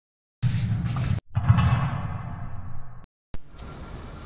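Intro sound effect over a title card: a short hit about half a second in, then a second, longer one that trails off in a falling whoosh and cuts off about three seconds in. Faint steady background noise begins near the end.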